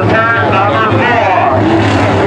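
An announcer's voice over the speedway loudspeakers, with the steady low drone of sport modified race car engines running beneath it.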